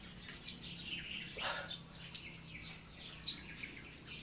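Birds chirping: many short, high, quick chirps scattered throughout, over a faint steady low hum.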